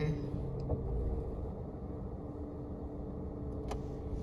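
Inside a moving vehicle's cabin: steady engine hum and road rumble, with a single sharp click near the end.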